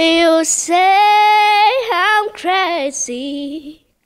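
A ten-year-old boy singing unaccompanied into a microphone: a long held note about a second in, then a few shorter sliding phrases that end just before the finish.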